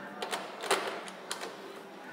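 The lock and handle of a hotel room door being worked to open it: a few sharp mechanical clicks.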